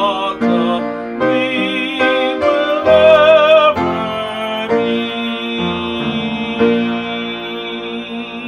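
A man singing a school alma mater with vibrato, accompanied by an upright piano. A loud held sung note comes about three seconds in, then the piano chords ring on and fade toward the end.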